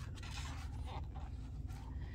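A page of a picture book being turned and pressed flat by hand: soft paper rustling with a few faint ticks, over a low steady hum.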